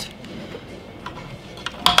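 Light handling of a paper label strip and a plastic hand-held pricing gun, with a few soft clicks and one sharper click near the end.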